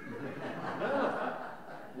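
An audience laughing at a joke, swelling to its loudest about a second in and then easing off.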